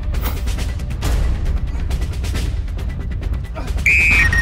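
Dramatic background music with a heavy low drum bed and repeated percussive hits, ending with a short high electronic beep.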